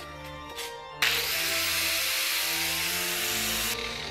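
Angle grinder running against metal in one steady burst of harsh noise, about three seconds long, starting suddenly a second in and cutting off just before the end, over background music.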